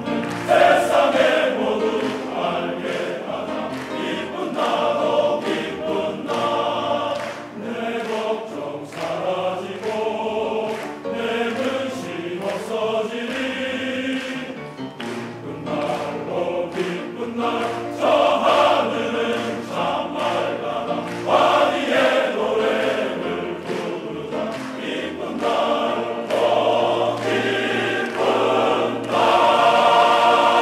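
Large men's choir singing in harmony, swelling louder several times and loudest near the end.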